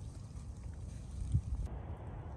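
Wind buffeting the microphone outdoors: a steady low rumble with no other clear sound.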